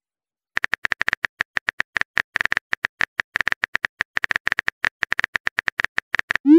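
Phone keyboard typing sound effect: a rapid run of identical key-tap clicks, about nine a second, starting about half a second in as a message is typed out.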